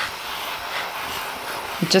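Hand-pump pressure sprayer spraying a jet of water onto potting mix in seed cell trays, a steady hiss. Speech begins near the end.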